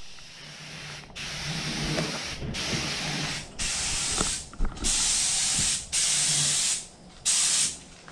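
Air-fed paint spray gun hissing in about seven bursts of roughly a second each, with short breaks between trigger pulls, as a coat of paint is sprayed on.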